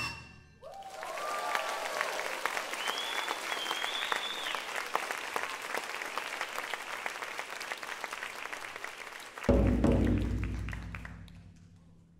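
Audience applauding with a few whoops and cheers after taiko drumming stops. Near the end a single deep drum boom that rings and slowly fades.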